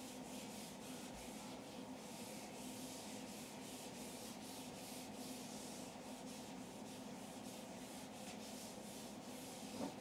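Whiteboard eraser wiping dry-erase marker off a whiteboard in quick, repeated back-and-forth strokes, each stroke a short hissing rub. There is a brief bump near the end, with a steady low hum underneath.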